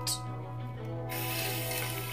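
Bathroom sink faucet turned on about a second in, then water running steadily from the tap into the basin.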